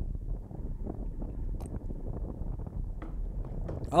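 Wind buffeting a bike-mounted action camera's microphone on a track bike at about 40 km/h: a low, uneven rumble with no clear tone.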